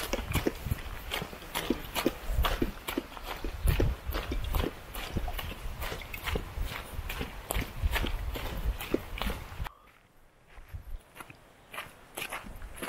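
Footsteps crunching on a stony gravel trail at a walking pace, a few steps a second. About ten seconds in the sound drops away suddenly to near quiet.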